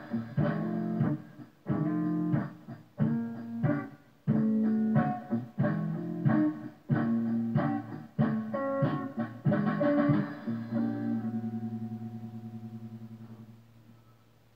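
Telecaster-style electric guitar played in a funky style: short, choppy chord stabs in a rhythm with brief gaps. About ten seconds in it settles on a held chord that rings out, wavering, and fades away over about three seconds.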